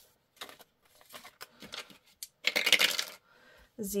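Two ten-sided dice being rolled, rattling down a dice tower and clattering into its tray in one brief burst a little past halfway, after a few faint clicks as they are picked up.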